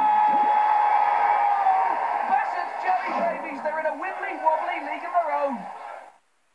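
Voices on a cartoon TV advert's soundtrack: one long held shout lasting about two seconds at the start, then more voices growing gradually quieter. The sound cuts off abruptly right at the end.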